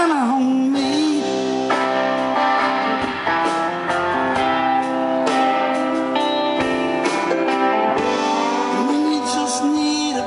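A rock band playing live: electric guitars holding sustained chords under a man's singing voice, which slides in pitch at the start and again near the end.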